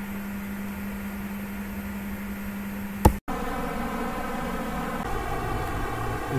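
Steady background hum and hiss with one constant low tone. About three seconds in there is a sharp click and a split-second dropout where two recordings are joined. After it comes a different steady hum made of several even tones.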